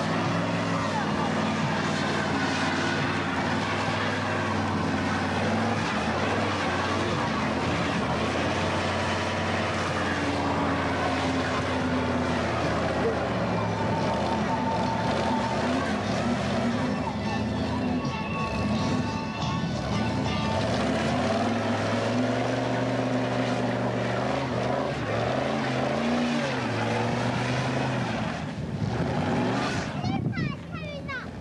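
Old pickup truck's engine held at high revs during a burnout, its rear tyres spinning and smoking on the tarmac; the engine note holds steady and shifts pitch a few times as the revs change.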